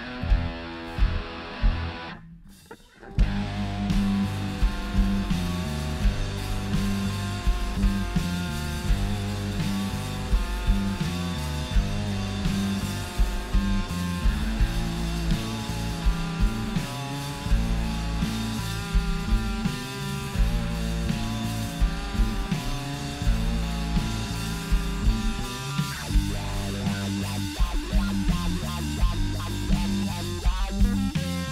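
Live rock band: distorted electric guitar on a Fender, bass guitar and drum kit playing together. The music breaks off for about a second near the start, then comes back in and carries on steadily.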